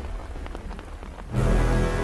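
Rain falling with scattered single drop strikes while a music note dies away; a low, sustained music chord comes in about two-thirds of the way through.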